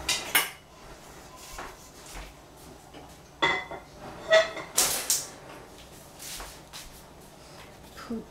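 Metal pots, pans and utensils clinking and clanking: a few separate knocks, some ringing briefly, the loudest about five seconds in.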